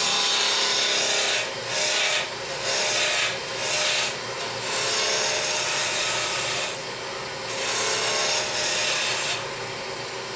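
A turning tool cutting a long wooden spindle spinning on a lathe, shearing off shavings with a hissing rasp in repeated passes and short breaks between them. The cutting stops near the end, leaving only the lathe running more quietly.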